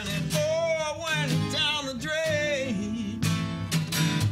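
A man sings with strummed acoustic guitar, holding long notes with a wavering vibrato. His voice stops a little under three seconds in, and the guitar strumming carries on alone.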